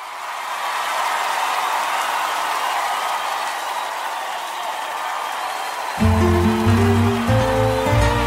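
A new track starts with a steady wash of crowd noise, cheering from a live audience, and about six seconds in the band comes in with bass and guitar in a romantic Latin ballad.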